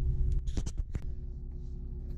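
Steady low rumble and hum inside a car cabin, with a few light clicks between about half a second and one second in.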